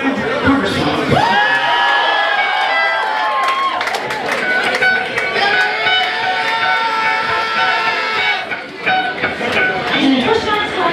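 A live band's electric guitar holds two long, sustained tones, the first about a second in and the second from the middle to near the end. Crowd shouting and cheering runs underneath.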